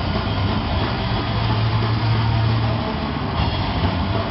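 Heavy metal band playing live: dense distorted electric guitars over a held low bass note, loud and rough-sounding.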